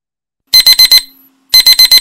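Loud electronic alarm beeping in the digital-alarm-clock pattern: two bursts of four quick high beeps, the second burst a second after the first. It sounds as the countdown timer runs out.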